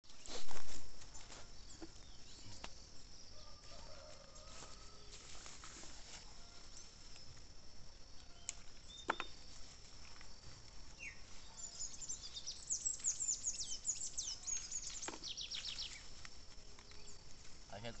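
Rural field ambience with a steady high-pitched insect drone. A loud bump comes about half a second in, scattered rustles and snaps follow as fava bean vines are pulled and picked by hand, and a bird calls in the second half with a quick run of high, falling chirps.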